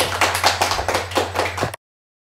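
A small group of five people clapping their hands in quick, uneven applause over a low steady hum; the clapping cuts off suddenly near the end.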